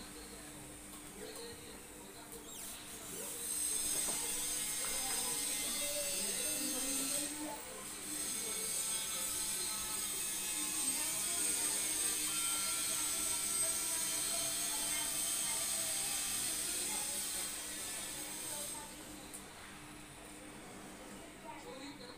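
A motorised tool or machine runs steadily with a high whine for about fifteen seconds, switching on a few seconds in and cutting off a few seconds before the end.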